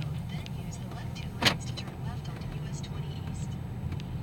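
Steady low rumble of an SUV's engine and road noise heard from inside the cabin while driving, with one sharp click about a second and a half in.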